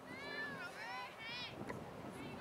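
Faint, high-pitched shouted calls of girls' voices, two or three drawn-out cries in the first second and a half, with their pitch rising and falling.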